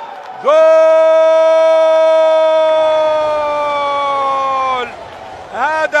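A male Arabic football commentator's drawn-out goal cry: one long held shout of about four seconds, starting about half a second in, sinking slightly in pitch and breaking off abruptly. A short spoken word comes just before the end.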